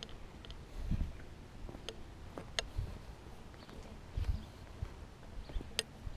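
Footsteps on a wet concrete grass-paver path, with a few sharp clicks over them; the sharpest click, near the end, is one the walkers notice and put down to their bag.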